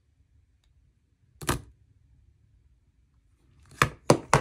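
Short sharp clicks from a titanium folding knife being handled, in an otherwise quiet room: one about a second and a half in, and a louder one near the end.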